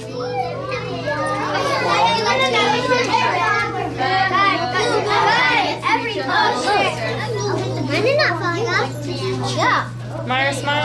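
Many children talking and calling out at once in a busy classroom, a dense babble of young voices over a steady low hum.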